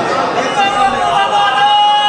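A man's voice over a public-address system with a crowd's voices, and a steady held tone that comes in about halfway through and lasts to the end.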